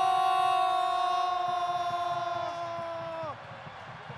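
A football commentator's long drawn-out goal shout, one held note that sags slightly in pitch and breaks off with a falling tail a little over three seconds in, over crowd noise.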